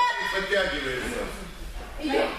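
A man talking, his words indistinct.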